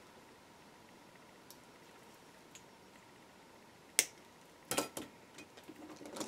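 Wire cutters snipping off the excess end of a 20-gauge wire wrap: one sharp click about four seconds in, followed by a few softer clicks as the tool and wire are handled.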